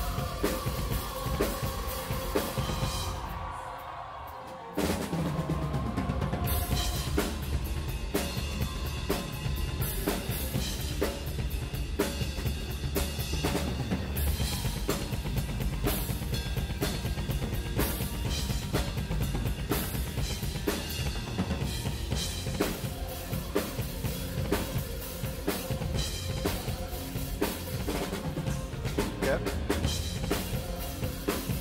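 Live metal drum kit from a symphonic metal band's concert: fast bass drum strokes under snare and cymbal hits. About three seconds in, the drums drop out for a moment, leaving a held chord that fades, then the full kit comes crashing back in near five seconds and keeps up a dense, fast beat.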